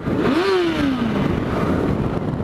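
Motorcycle engine revving: its pitch climbs sharply, then falls away steadily over about a second, over a steady rush of wind.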